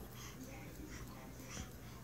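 Faint breathing close to the microphone in a quiet room, with no distinct sounds standing out.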